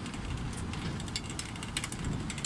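Small cable-car cart running along its overhead cable: a steady rumble with many quick, irregular clicks and rattles from the pulley wheels and the rickety cart.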